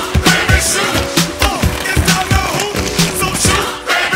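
Pop music with a steady beat and singing, with skateboard sounds of board and wheels on concrete mixed in beneath it.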